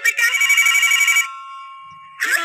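A push-button desk telephone ringing with an electronic trill of rapid pulses. The ringing stops a little over a second in and leaves a short fading tail.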